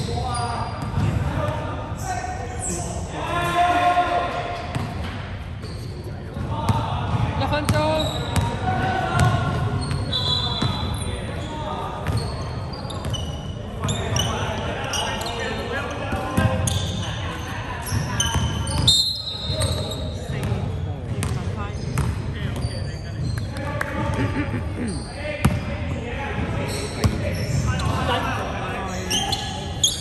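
Basketball dribbled and bouncing on a wooden gym floor in a game, with players' voices calling out, echoing in a large hall.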